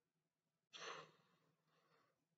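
A man's single audible sigh, a short breathy exhale about a second in, in an otherwise near-silent room.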